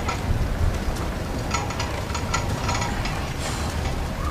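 Steady low rumble of outdoor street background noise, with a few faint clicks.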